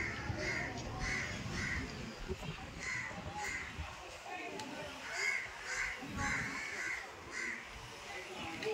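A bird giving harsh cawing calls, about two a second in short runs with brief gaps between them, over a low murmur of distant voices.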